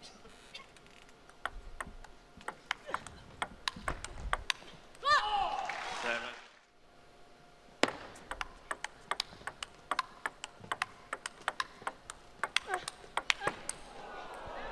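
Table tennis rallies: quick, irregular clicks of the plastic ball striking rackets and table, broken about five seconds in by a loud shout lasting about a second, then a second rally of ball hits starting a little before eight seconds.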